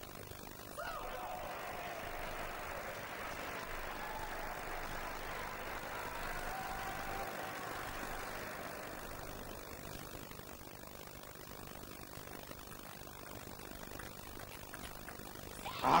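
Indoor arena crowd cheering and clapping after a point in a table tennis match, swelling about a second in and dying away after about ten seconds.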